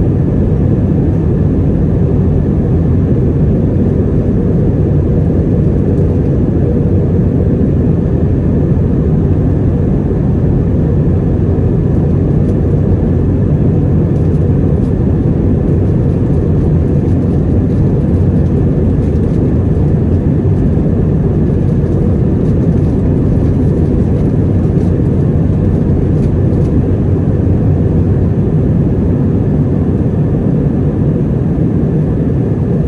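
Steady cabin noise inside an Airbus A320 climbing after take-off: a loud, even rumble of jet engines and airflow, with a faint high hum above it.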